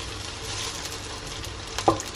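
Sliced onions sautéing in hot oil in a frying pan: a steady, even sizzle.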